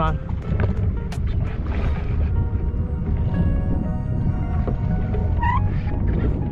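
Steady low rumble of a small outboard motor pushing the boat slowly through the water, under quiet background music.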